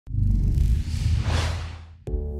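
Logo intro sound effect: a deep rumbling whoosh that starts suddenly, swells to a peak and then fades away near the end.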